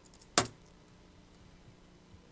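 A single sharp, loud keystroke on a computer keyboard about half a second in, as a search command is entered; otherwise only a faint steady room hum.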